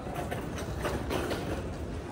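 Wheeled utility cart loaded with clothes being pushed across the floor, its casters giving a steady rolling rumble with irregular clattering rattles.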